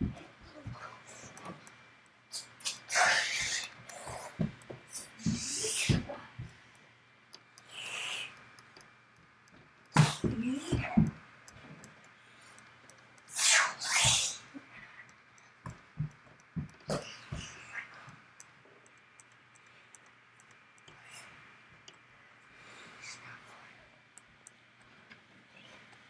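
Short, irregular breath-like noises a few seconds apart, over a faint steady low hum.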